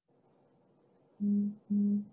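A woman's voice giving two short closed-mouth hums, 'mm … mm', at a steady pitch about a second in, just before an answer begins. Faint hiss of an open microphone before them.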